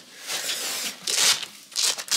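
Velcro strap of a horse's Back on Track leg wrap ripping three times, the last two rips louder and sharper.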